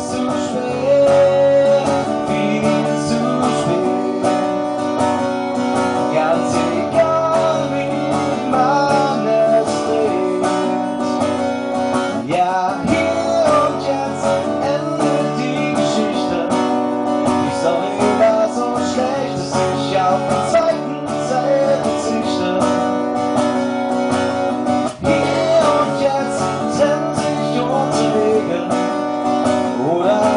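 Acoustic guitar strummed in a steady rhythm with a man singing over it, a live acoustic cover song.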